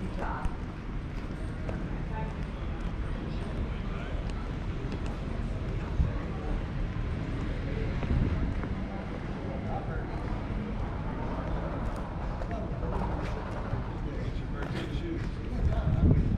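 Outdoor pedestrian-street ambience: a steady background of passers-by's voices, with a short sharp knock about six seconds in.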